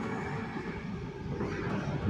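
Chapati cooking in an oiled non-stick pan over a gas flame, a steady low hiss with no distinct clicks or knocks.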